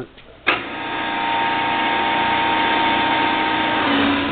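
ENCO 13 x 40 gap-bed engine lathe switched on at the spindle lever: a click about half a second in, then the motor and headstock gearing spin up and run at a steady speed, a hum with several steady tones in it.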